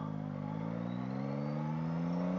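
Motorcycle engine pulling away gently from a stop, its note rising slowly and steadily, with a faint high whine rising along with it.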